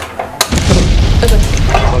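Oil in a pan on a gas stove flaring up into a fireball: a sudden loud whoosh about half a second in, with a deep rumble and hiss that carries on.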